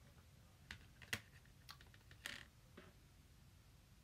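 About five faint clicks and taps of small objects being handled, the sharpest a little over a second in and a slightly longer scraping tap just past two seconds.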